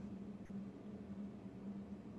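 Faint room tone: a steady low hum under light hiss, with a faint tick about half a second in.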